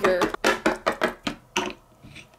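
A quick, uneven run of light plastic taps and clacks, about eight in a second and a half, trailing off: small hard plastic toy figurines being picked up and set down on a hard tabletop.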